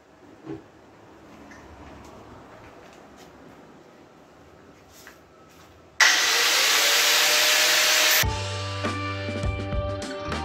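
Faint handling noises, then about six seconds in an angle grinder starts up with a rising whine and runs loud for about two seconds as it cuts into the steel of a bicycle wheel around its hub. Background music takes over near the end.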